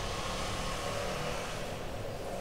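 Steady low background hum and hiss with no clear event: room tone picked up by a webcam microphone.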